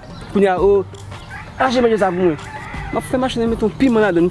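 A rooster crowing, a long held call about one and a half seconds in, with a man's voice around it.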